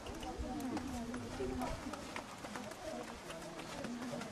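Horse's hooves trotting on a soft dirt arena, a run of dull hoofbeats, with people's voices talking over them.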